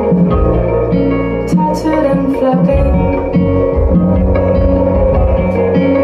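Live band playing an instrumental passage: picked electric guitars with sustained notes over a heavy low bass line, with occasional light drum or cymbal hits.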